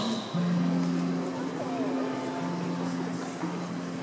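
Low hummed notes held steadily as the song begins, two pitches overlapping like a drone.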